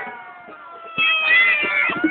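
Several horns blowing long, steady notes over a crowd. The notes die away, then a fresh, louder set starts about a second in, one of them bending down in pitch.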